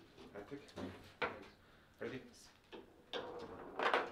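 Foosball table in play: the ball is struck by the plastic figures and the rods knock. There are a few separate sharp clacks, then a louder run of knocks and rattling near the end.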